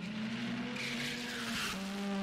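Engines of two Toyota AE86s racing toward the listener, a steady engine note that dips slightly in pitch about one and a half seconds in, with tyre squeal from their sliding coming in about half a second in.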